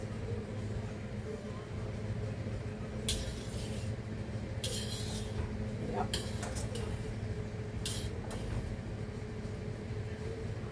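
A metal spoon clinking and scraping against a stainless steel pan as pieces of pork are lifted out of their cooking liquid, in several short bursts over a steady low hum.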